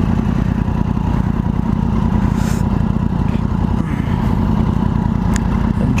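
Sport-bike engines running at low revs in slow traffic: the rider's own 2012 Triumph Daytona 675 inline-three with a Yamaha R1 alongside. A steady, even engine note with no hard revving.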